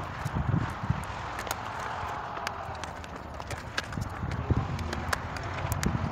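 Crinkling and clicking of a plastic kite wrapper being handled and opened, many small sharp crackles, over low rumbling gusts of wind on the microphone.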